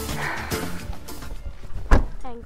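Background music, with one loud thump near the end as a car door is shut.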